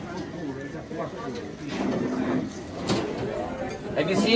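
Indistinct voices of people talking in the background, with no single clear speaker.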